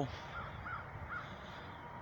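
Three faint, short bird calls spaced a few tenths of a second apart, over quiet outdoor background noise.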